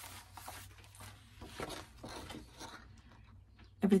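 Rustling of paper and plastic as a cross-stitch kit's printed chart is slid out of its clear plastic sleeve, a few soft scraping strokes that fade near the end.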